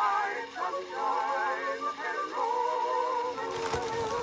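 A 1920 recording of a popular song: singing with a wide vibrato over an instrumental accompaniment.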